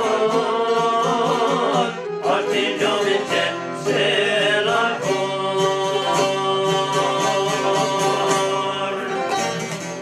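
Albanian folk music: a violin bowed and a long-necked Albanian lute strummed together, fading out near the end.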